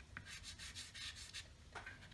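Faint quick strokes of lime-green chalk pastel scratching and rubbing across drawing paper, several strokes a second.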